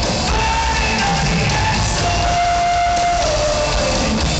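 Live rock band playing in an arena, recorded from the crowd, with the lead singer holding one long note from about halfway through that slides down near the end, over guitars, bass and drums.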